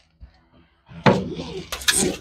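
Rustling and several sharp clicks of something being handled, starting about a second in, with the clearest clicks near the end.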